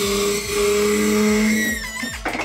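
Overhead shoulder restraints of a motion-simulator seat being lowered and locked: a steady hiss with a low hum under it that stops shortly before the end.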